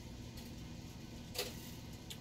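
Small tool clicks as a hand driver works a small bolt into an RC crawler's metal chassis: one sharp click about one and a half seconds in and a couple of fainter ticks, over a steady low hum.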